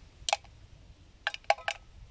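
A few light clicks and a faint metallic clink: one click early, then a quick run of three or four, as a steel tin can and a gas canister are handled on bricks.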